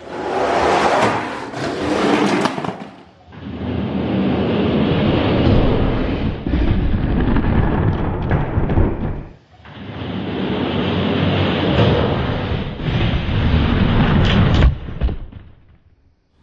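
Hot Wheels diecast monster trucks rolling down a plastic race track: a loud rattling rumble of hard plastic wheels on the track, heard in three long runs broken by short gaps about three seconds and nine and a half seconds in, with a sharp knock near the end.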